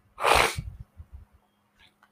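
A man sneezes once, a short, sharp, noisy burst about a quarter second in, followed by a few faint low thumps.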